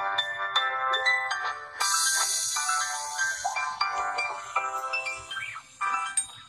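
Short electronic jingle of bright, chiming notes, with a hissing shimmer laid over it from about two seconds in until about three and a half seconds in.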